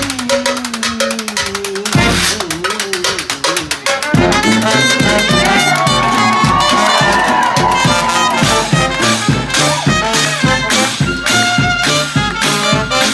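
Live traditional jazz band playing an instrumental passage: a washboard with cymbal keeps the rhythm under guitar and brass. A sparser opening gives way to the full band about four seconds in.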